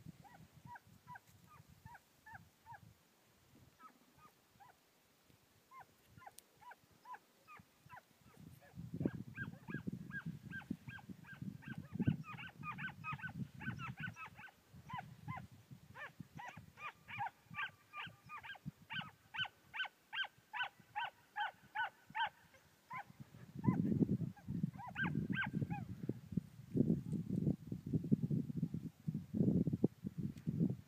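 A pack of hunting hounds (zagar) giving tongue on a hare's trail: strings of short, high yelps from several dogs, sparse at first, then thick and overlapping in the middle before thinning out. Two stretches of low rumble sound on the microphone.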